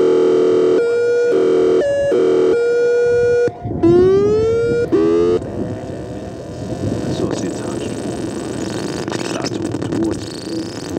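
Synthesizer music: held synth notes that change pitch in steps, then a rising glide about four seconds in. After that it dissolves into a dense, hissing wash of noise.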